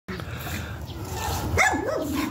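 A dog's short yelp near the end, its pitch dipping and rising again, over low rumbling handling noise.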